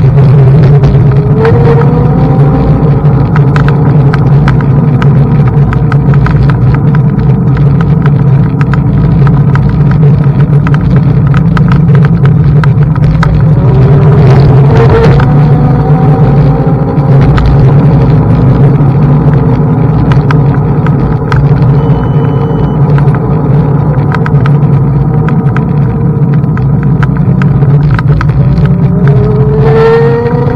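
Xiaomi M365 Pro electric scooter: a loud, steady rumble with frequent small rattles and clicks, and its motor whining up in pitch about a second in, again halfway through and at the end.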